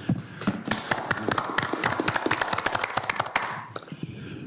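A small group of people applauding, a quick patter of separate claps that dies away near the end.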